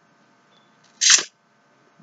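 A short, sharp breath from a man pausing mid-sentence, about a second in; otherwise near silence with a faint steady hum.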